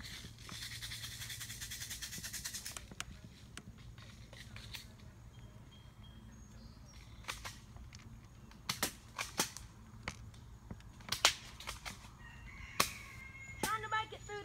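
Airsoft gun firing: a rapid rattling burst lasting about two and a half seconds near the start, then a scattering of single sharp cracks in the second half.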